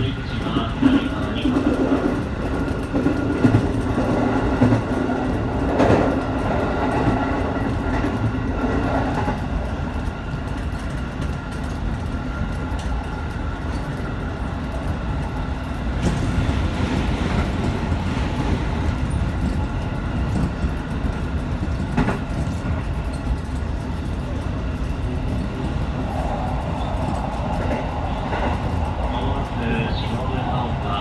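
Electric commuter train running at speed, heard from inside the front car: a steady rumble of wheels on rail with a hum from the traction motors and a few sharp rail clicks. About halfway through, an oncoming train passes close on the adjacent track in a rush of louder noise.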